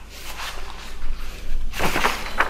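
Sheets of paper rustling as pages are handled and turned, soft at first, with a louder rustle near the end.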